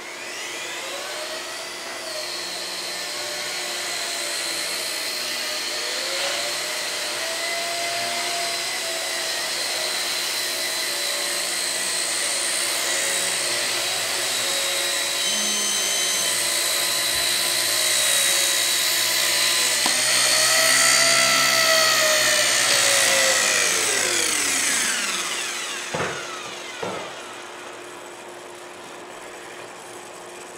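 Blade Nano CP X micro RC helicopter's motor and rotor whine spooling up, holding a high whine whose pitch wavers as it flies, then spinning down about five seconds before the end. Two light clicks follow.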